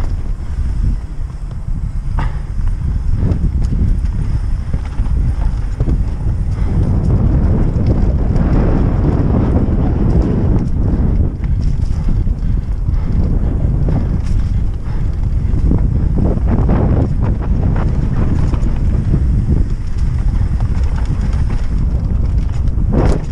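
Wind rushing over the microphone at speed, with a downhill mountain bike (Norco Aurum) knocking and rattling as its tyres run over roots and rocks on the trail. It grows louder about a third of the way in.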